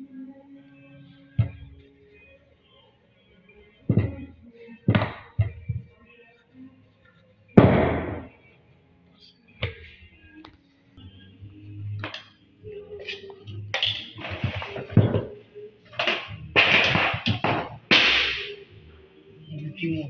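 Hands knocking and thumping on a wooden worktable while dough is handled, a sharp knock every second or two with one much louder about seven and a half seconds in, then a run of rustling sounds near the end. Music plays faintly underneath.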